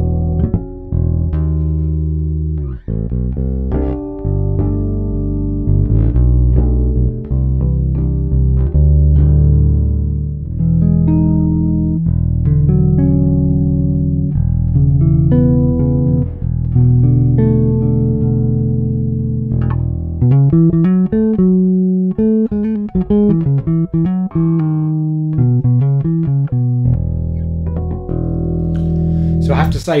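Electric bass, a Korean Vester Stage Series P-bass copy with a freshly fitted Fender Custom Shop '62 Precision Bass pickup, plucked with the fingers through a Markbass Little Mark III bass amp. It plays a run of held low notes, then from about twenty seconds in a quicker, choppier passage of higher notes.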